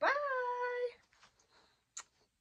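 A woman's high, drawn-out sing-song goodbye call, held on one note for just under a second, followed by a short lip-smack of a blown kiss at the end.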